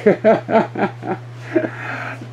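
A man chuckling: a run of short laughs that fade out after about a second and a half.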